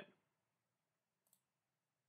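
Near silence: room tone, with one faint short click a little over a second in.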